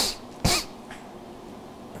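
A man's short, sharp sniff about half a second in, followed by quiet room tone.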